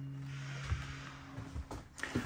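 A faint steady low hum, with a few soft low bumps around the middle and near the end.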